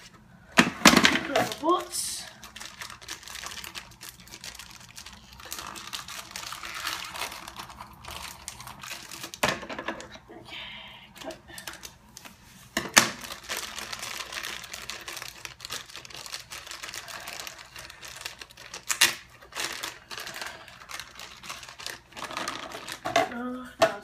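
Plastic bag of foam Nerf darts crinkling as it is handled and cut open with scissors, with scattered small clicks and a few sharp knocks.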